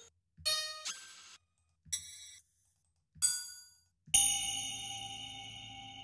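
Synthesized metallic clang hits from Ableton's DS Clang drum synth through flangers and a hybrid reverb: four hits a second or so apart, each with a different timbre as the rack's macros are randomized. The last, about four seconds in, rings on long and steady like an electronic crash cymbal.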